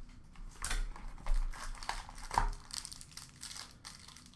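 Cardboard trading-card box being opened and its wrapped pack pulled out: a few short, sudden crinkling and rustling sounds of card stock and wrapper, with light crackling between them.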